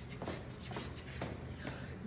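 A person keeping a steady beat before a rap, with soft percussive hits about twice a second and a short laugh about a second in.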